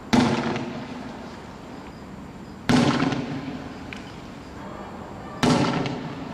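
Three loud explosive bangs, about two and a half seconds apart, each with an echoing tail that fades over about a second.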